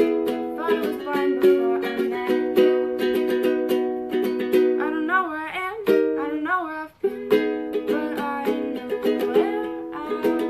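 Ukulele strummed in steady chords, with a singing voice over it. A little past halfway the chords drop out for about a second and a half, leaving mostly the voice, before the strumming picks up again.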